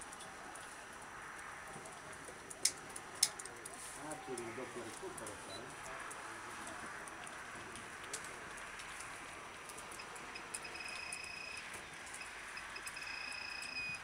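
Faint background ambience with distant voices, two sharp clicks about three seconds in, and a steady high whistling tone heard twice near the end.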